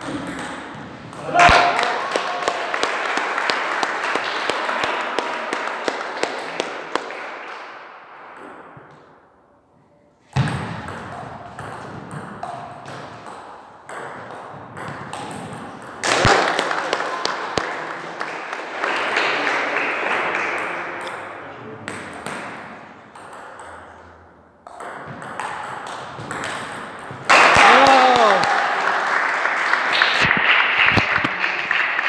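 Table tennis ball clicking against bats and table in rallies, with bursts of shouting and talk from players and spectators that swell after points and fade away, the loudest near the end.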